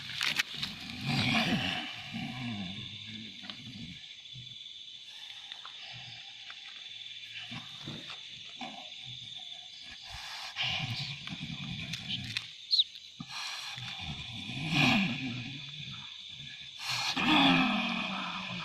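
A person growling and roaring in low, animal-like bursts, about four times, the longest near the start. A steady high-pitched tone runs behind them.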